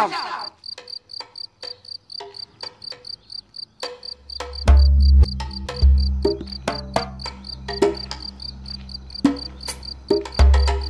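Crickets chirping in a steady, rapid, even pulse. About halfway through, deep low music notes come in and become the loudest sound.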